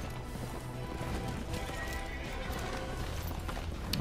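Background score music with horses' hooves galloping, from an animated episode's soundtrack.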